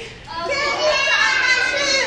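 Many children's voices together, loud and sustained, starting up again after a brief break just after the start.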